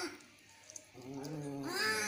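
Domestic cat yowling angrily in a fight standoff, a threat call. A drawn-out yowl dies away at the start, and after a pause of about a second a new long yowl begins and rises in pitch near the end.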